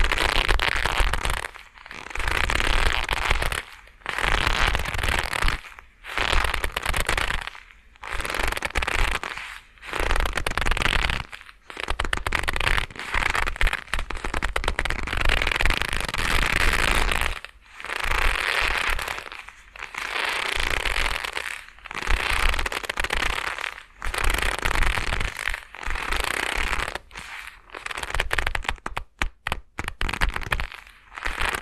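Leather gloves being rubbed and squeezed close to binaural dummy-head microphones, giving crackly creaking in bursts of about two seconds with brief pauses between them. There is a longer unbroken stretch in the middle and a run of quick, short bursts near the end.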